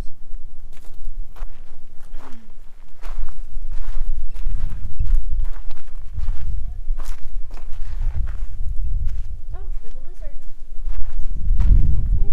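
Footsteps on dry gravelly dirt, about two steps a second, with a low rumble on the microphone.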